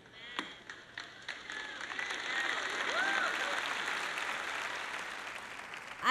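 A large audience applauding, the clapping swelling over the first couple of seconds and then tapering off, with a brief call from someone in the crowd about halfway through.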